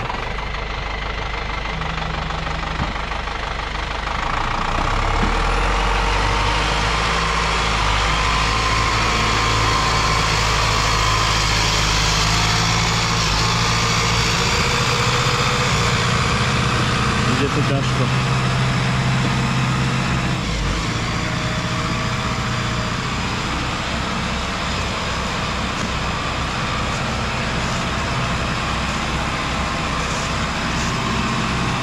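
Zetor Proxima tractor's diesel engine running steadily under load as it hauls a winched load of logs, getting a little louder about four seconds in and holding there.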